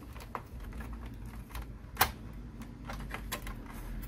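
Light clicks and taps of a sheet-metal cover plate being slid back into an all-in-one PC's metal chassis and tucked under its edge, with one sharper click about two seconds in.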